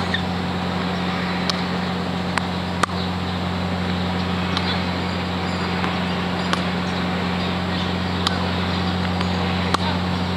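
Tennis balls struck by rackets in a rally on a hard court: sharp pocks about every two seconds, over a steady low hum.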